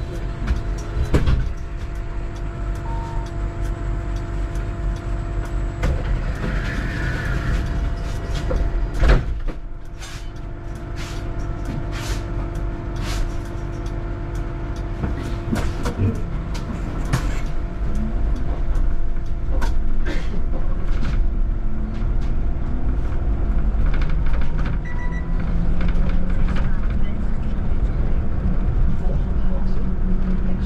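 Cabin of a VDL Citea electric city bus: a steady electric hum with scattered clicks while the bus stands still, then the low whine of the electric drive, climbing slowly in pitch and getting louder in the second half as the bus pulls away.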